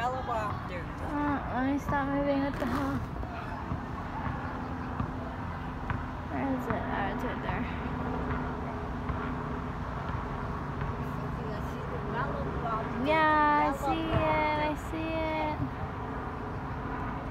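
Light helicopter flying overhead: a steady distant drone of its engine and rotor. High-pitched voices call out at the start and again, louder, near the end.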